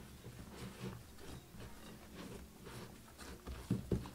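Sticky yeast bread dough being kneaded by hand in a glass bowl: faint, irregular soft pats and squishes.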